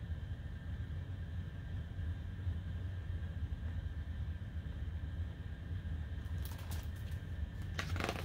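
Steady low hum of room tone, then near the end a few soft rustles of a picture book's paper page being handled and turned.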